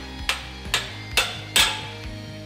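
Ball-peen hammer striking a steel wedge four times, about two blows a second, knocking it out from under a welding dog tacked to steel plate; the last blow is the loudest. Background music plays underneath.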